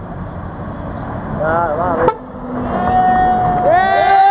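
Volvo FH semi-trailer truck passing close: diesel engine rumble, then its air horn sounding loud and sustained from about three seconds in. The horn's several tones bend up and then fall.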